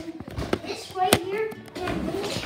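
Two sharp taps about a second apart as hard objects are handled and knocked together.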